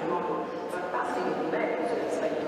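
Speech: a woman talking into a microphone.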